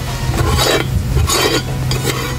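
Metal spoon scraping and stirring in a large metal pot of curry sauce, two rough scraping strokes, over a steady low hum.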